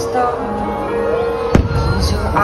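A single firework shell bursting about a second and a half in, a sharp bang with a low rumble after it, over the show's orchestral soundtrack music with long held notes.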